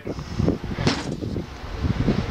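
A 10½-inch Lodge cast-iron skillet turned over by a gloved hand and set back down on a workbench: low, irregular rumbling handling noise with one sharp knock about a second in.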